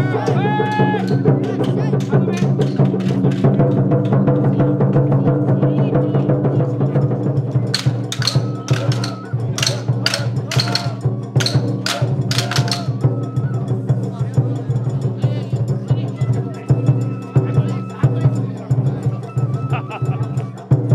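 Japanese festival hayashi music from the float: taiko drums beaten in a steady rhythm over a continuous low tone. A run of sharp clacks comes about eight seconds in, and voices call out.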